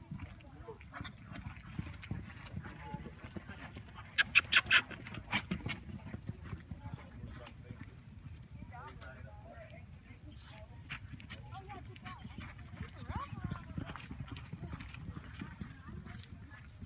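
Horse's hoofbeats galloping on soft arena dirt during a barrel racing run, heard at a distance over a low steady rumble. About four seconds in comes a quick burst of sharp clicks.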